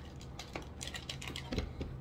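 Light clicks and taps of hands handling small objects at a table, with a dull thump about one and a half seconds in, over a steady low hum.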